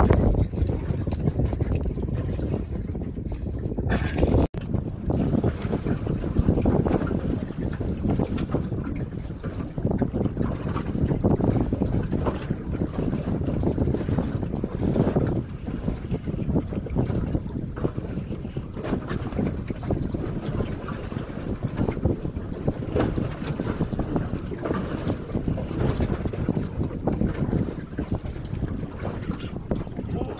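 Wind buffeting the microphone, with water slapping and lapping against the hull of a small boat drifting on choppy open water.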